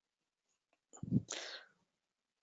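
A man's brief non-speech vocal sound about a second in: a short low voiced burst followed at once by a breathy rush of air.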